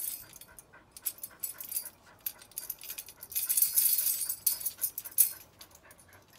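Tambourine jingles rattling in uneven bursts as a spaniel grabs and tugs the tambourine in its mouth, with a dog panting. The rattling is busiest around the middle.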